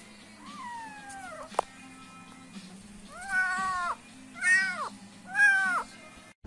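Very young kitten meowing: a faint falling call, a sharp click, then three loud meows about a second apart near the end. These are the calls of a hungry kitten that has lost its mother.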